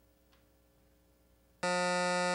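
Quiet studio room tone, then near the end a steady electronic game-show buzzer starts and holds one flat, even pitch. It is the time-up buzzer: the team's time to answer has run out without a reply.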